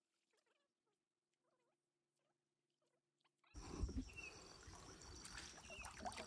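Near silence with a few very faint high squeaks, then suddenly, about three and a half seconds in, water sloshing and churning around a person wading chest-deep through a muddy pond.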